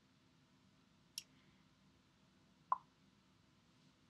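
Near silence: quiet room tone with two brief faint clicks, one about a second in and another a little before the three-second mark.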